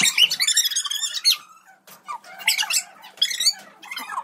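High-pitched squealing and giggling from young children, in two spells with a short lull between.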